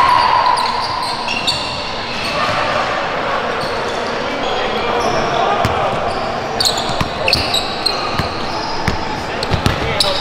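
Live gym sound of a pickup basketball game: players' voices calling out, a basketball bouncing on the hardwood, and short high sneaker squeaks with sharp knocks that come thicker in the last few seconds.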